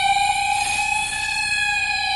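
Electronic intro sting: one held synthesizer tone made of several pitches, steady in level and drifting slightly in pitch.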